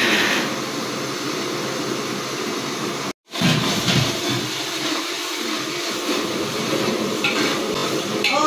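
Ginger-garlic paste sizzling as it hits hot oil in a large aluminium cooking pot, with a long steel ladle stirring and scraping against the pot. The sound cuts out briefly about three seconds in.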